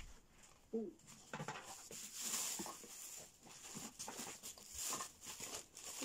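Plastic packaging rustling and crinkling in short, irregular bursts as it is handled in and lifted out of a cardboard box. A brief voice-like sound comes about a second in.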